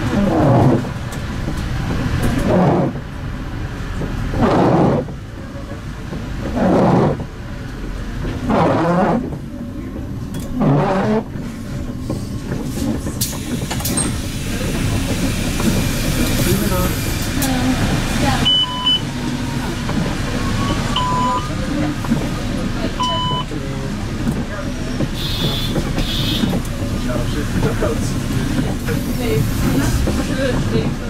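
Cab sound of a MAN Lion's City CNG city bus slowing to a halt and standing at a stop, its engine running. In the first ten seconds a loud groaning sweep repeats about every two seconds. After that a steady running hum carries a few short, high beeps and a brief hiss.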